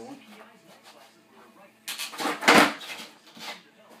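A skateboard ollie on carpet: a sharp knock as the tail is popped about two seconds in, then a louder thud half a second later as the board and feet come down, and a smaller knock about a second after.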